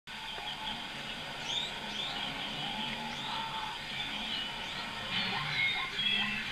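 Many short bird chirps and little rising calls over quiet, steady background music, from a television wildlife documentary's soundtrack.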